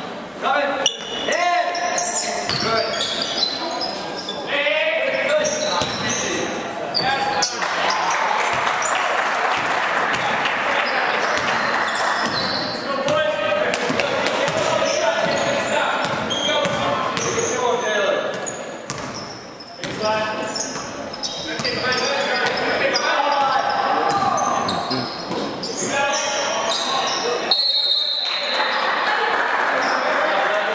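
A basketball bouncing on a hardwood court during a game in a large gymnasium, with the shouts and chatter of players and spectators mixed in throughout.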